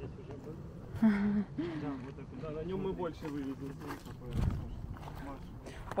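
People talking quietly and indistinctly over a steady low rumble, with a brief low thump about four and a half seconds in.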